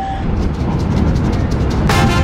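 Low, steady rumble of a subway train, with brass swing music coming in near the end.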